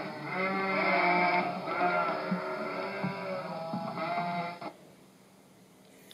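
Recorded sheep bleating, several overlapping bleats played back through an Amazon Echo smart speaker, the sheep-count skill's flock sound. It stops abruptly about four and a half seconds in.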